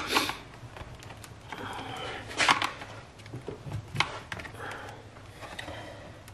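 Flat-head screwdriver prying and scraping at the plastic retaining clips of a Jeep JL grill insert, with sharp plastic clicks and knocks, the loudest about two and a half seconds in.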